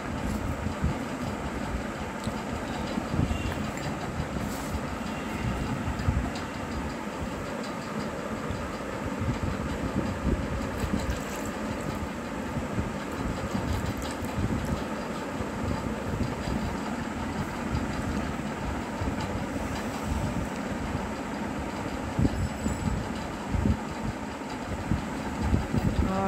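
Steady low rumbling background noise throughout, with no clear separate events standing out.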